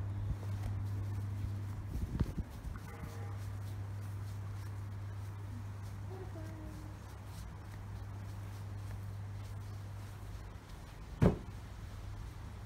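A steady low hum, with a few soft knocks about two seconds in and a single sharp knock near the end.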